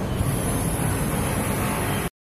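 Steady outdoor noise with an unsteady low rumble and no clear single source.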